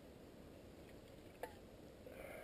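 Near silence, with a steady low background noise and a single sharp click about one and a half seconds in, preceded by a fainter click.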